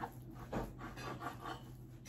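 A knife cutting through a mass of risen bread dough on a board: soft rubbing with light knocks near the start and about half a second in.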